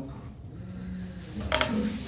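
Low background sound in a small room, then a man's voice starting near the end.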